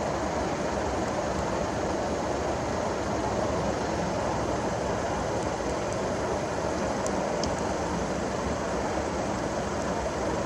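Steady outdoor background noise with no distinct events, only a few faint ticks.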